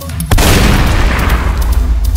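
A single shotgun blast about a third of a second in: a loud boom with a long, fading tail and low rumble, over a background music track.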